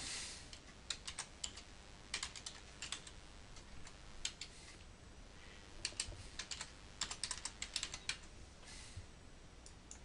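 Computer keyboard typing, quiet, in several short runs of keystrokes with pauses between them.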